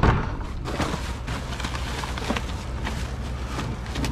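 Black plastic garbage bag rustling and crackling as gloved hands pull it open and rummage through it, over a low steady rumble.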